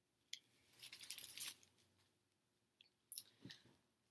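Faint rustling of clothing and its wrapping being handled, in three short bursts: one about a third of a second in, a longer one around the first second, and another near the end.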